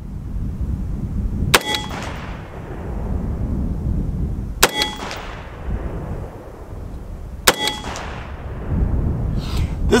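Three shots from a CMMG Banshee 5.7x28mm AR pistol, about three seconds apart, each echoing off the range and carrying a brief metallic ring from steel targets at 100 yards. Wind rumbles on the microphone throughout.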